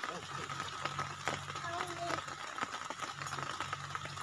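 Faint background speech: a voice heard briefly about midway, over steady outdoor background noise with a faint hum.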